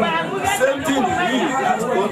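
Several people talking over one another, with a laugh at the start.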